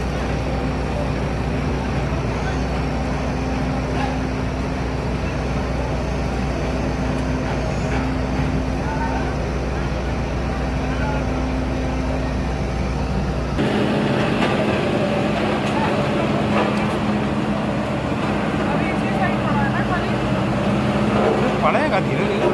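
Diesel engines of asphalt-paving machinery, a paver and a road roller, running steadily. About two-thirds of the way in the engine sound changes abruptly and grows a little louder and busier.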